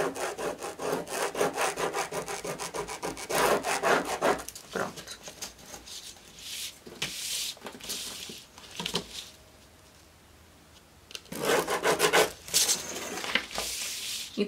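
A pen scratching quickly back and forth on kraft pattern paper along a metal ruler, a rapid run of strokes for about four seconds, then sparser strokes. About eleven seconds in there is another louder burst of scraping on the paper.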